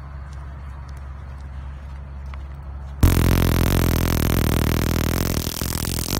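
A stun-gun flashlight's electrodes arcing: a sudden, loud, rapid crackling buzz that starts about halfway through and runs for about three seconds. Before it there is a low, steady rumble of distant city traffic.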